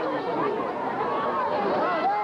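Crowd chatter: many spectators talking over one another at once, a steady babble of overlapping voices with no single voice standing out.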